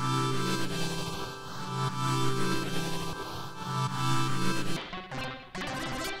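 Looping electronic track: a synth bass line repeating under sustained chords played by a Bitwig FM-4 synthesizer preset being auditioned. Near the end the chord sound changes suddenly as a different preset is switched in.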